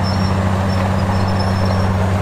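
Heavy diesel earthmoving machinery running steadily at an even pitch, a constant low engine drone with a fast fine pulse and no change in load.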